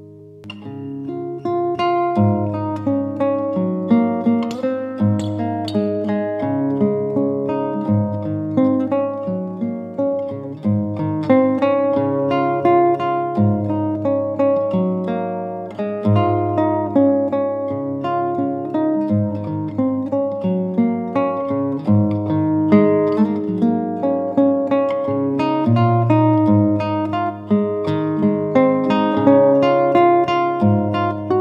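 Solo fingerstyle playing on a capoed nylon-string classical guitar, a José Ramírez 125 Años: plucked melody notes and chords over a moving bass line. The playing picks up again after a brief lull at the start and then runs on continuously.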